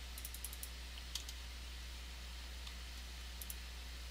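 Computer keyboard keys and mouse buttons clicking: a quick run of clicks at the start, a couple more about a second in, and a pair near the end. Underneath is a steady low hum.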